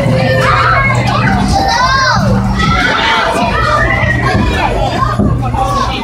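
A crowd of children shouting and playing, many voices overlapping over a steady low hum.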